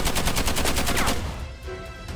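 A burst of automatic rifle fire: about a dozen rapid shots in just over a second, then dying away, over background music.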